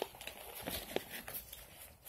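Plastic snack pouch crinkling as it is handled and lifted, with a few faint crackles.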